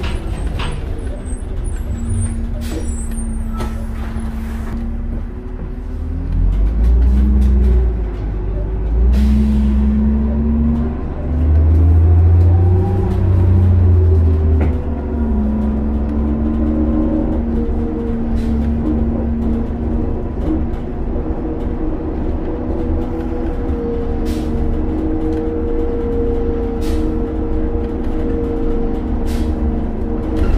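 Cabin sound of a 2002 New Flyer D40LF diesel transit bus under way. The engine rumble grows louder for several seconds as the bus accelerates, with whining tones climbing in pitch, then settles into a steadier drone at cruise. Short rattles and knocks from the body come throughout.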